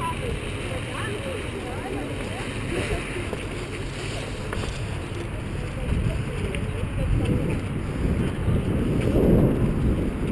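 Wind rumbling on the microphone of a camera carried outdoors, with faint voices of the crew talking in the distance.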